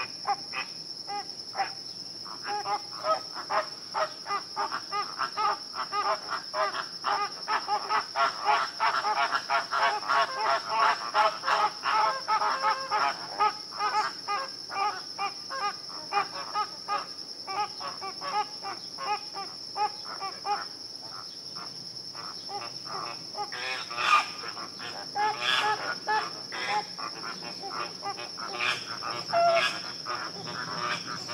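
A flock of flamingos calling: a dense run of short honks, busiest in the first half and thinning out later, over a steady high-pitched tone.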